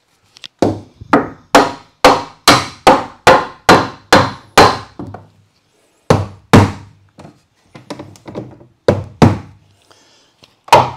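Hammer striking tongue-and-groove pine wall boards: a quick run of about a dozen blows, two or three a second, then a short pause and a few more blows, the later ones lighter.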